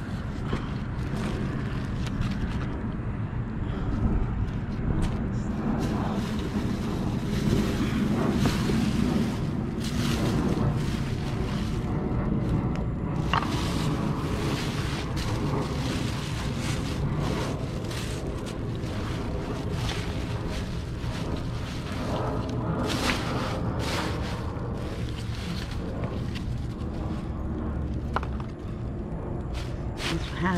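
Plastic bags and cardboard rustling and crinkling in short, irregular bursts as hands dig through a full dumpster, over a steady low rumble.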